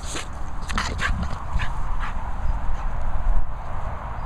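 Staffordshire bull terrier making a few short, sharp noises close by, clustered about a second in, over a steady low rumble.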